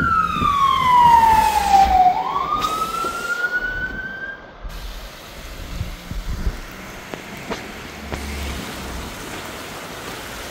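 Fire engine siren wailing, one slow sweep down in pitch and back up again, cutting off about halfway through. After it a steady rush of water and rain from the flooded street.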